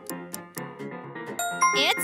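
Quiz countdown-timer sound effect: rapid, even ticking over upbeat background music, then a bright chime ringing out near the end as the timer runs out and the answer is revealed.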